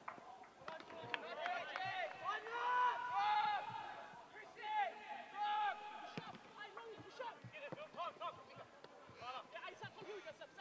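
Football players shouting short calls to each other across an open pitch, loudest in the first six seconds, with a few sharp knocks of the ball being kicked in the second half.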